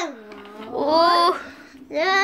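A child's wordless vocalizing: a falling wail at the start, then a short rising cry about a second in.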